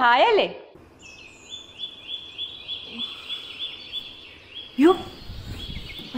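A phone alarm sounding an early-morning wake-up: a high chirp repeating evenly about three times a second. A woman's speech ends just at the start, and a short cry with a low rumble comes near the end.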